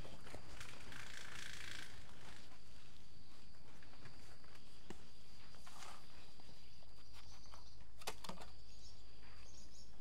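Hands pressing and working compost-and-potting-soil mix around seedlings in a plastic tub: soft scattered rustles, with a small knock about eight seconds in. Under it runs a steady background hiss with a faint high tone.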